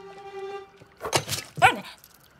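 A soft held music note, then about a second in a cartoon dog gives two or three short, high yips that glide down in pitch.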